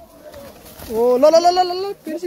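A spectator's drawn-out, slightly rising holler at a bull fight, about a second long, starting about a second in after a quieter stretch.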